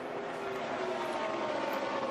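NASCAR Cup stock cars' V8 engines running flat out on the track, a steady drone whose pitch drifts slowly as the cars go by.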